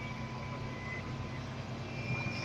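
Volvo B5TL double-decker bus running, heard inside the cabin on the upper deck: a steady low engine hum with road and cabin noise, and a faint high whine.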